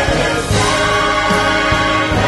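Mixed choir of women's and men's voices singing a Christmas cantata, holding sustained chords.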